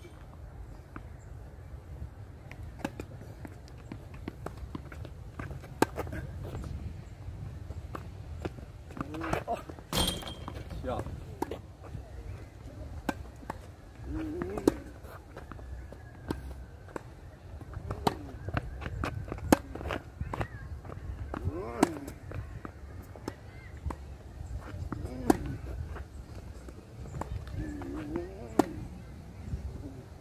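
Ball hits and bounces on an outdoor hard court during a rally, heard as sharp, irregular knocks, the loudest about 10 s in, over a steady low rumble from wind on the microphone.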